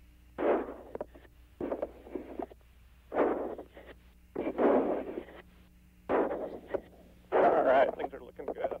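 Bursts of muffled, unintelligible sound over the shuttle crew's radio and intercom loop, about six of them, each under a second long, with a steady low hum underneath.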